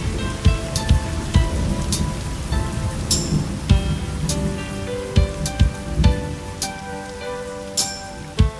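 Rain and thunder sound effect, with scattered sharp drop-like clicks and a low rumble that dies away over the second half, under soft held keyboard notes of a slow R&B track.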